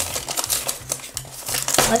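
Thin plastic wrapper crinkling and rustling in irregular bursts as a cardboard blind box is pulled out of its cut-open sleeve and opened by hand.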